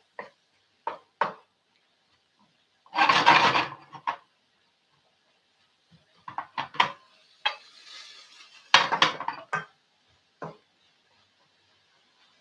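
Wooden spoon stirring and scraping diced vegetables around a non-stick frying pan: scattered knocks and scrapes, with a longer scrape about three seconds in and a cluster of knocks near nine seconds.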